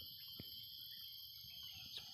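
Faint steady high-pitched insect chorus, a continuous shrill drone, with one soft click about half a second in.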